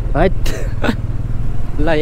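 Small motor scooter running as it is ridden on a rough dirt road, a steady low rumble under the riders' brief talk.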